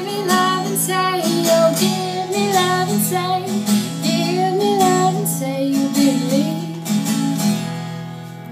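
A young woman singing a gliding melody to her own acoustic guitar accompaniment in the closing phrases of a song; the music grows softer near the end.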